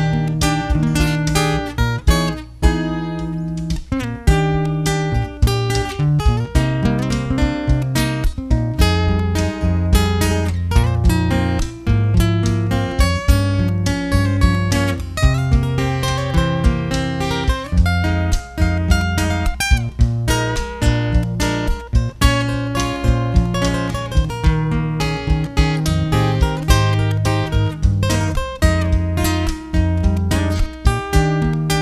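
Instrumental break played on two acoustic guitars: one picks a melodic lead line over the other's strummed chords. A cajón keeps a steady beat underneath.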